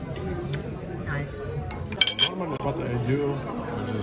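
Two quick, ringing clinks of tableware about halfway through, over a background of voices.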